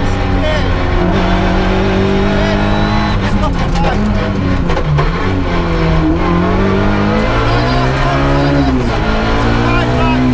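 Ford Puma 1.6 rally car's four-cylinder engine under hard driving, heard from inside the cabin. The engine note falls around four to five seconds in as the car slows for a tight junction, then climbs steadily, with a sharp dip at a gearchange near the end before it rises again.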